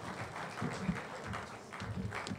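Audience applause tapering off, with a few dull thumps.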